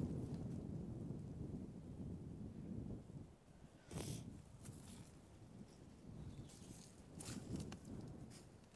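Faint footsteps through dry grass and brush, with a sharper crackling snap about four seconds in and a few more rustles near the end. Under them is a low wind rumble on the microphone that dies down over the first few seconds.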